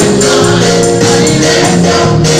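Gospel singing by a group of voices, with a tambourine keeping a steady beat.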